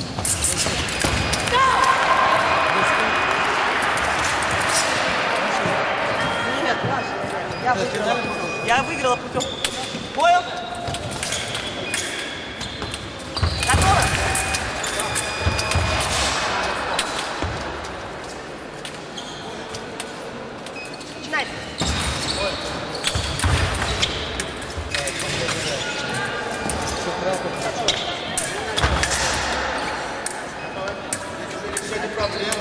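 Echoing activity in a large sports hall: voices, scattered thuds and knocks, and short high squeaks like shoes on a wooden floor.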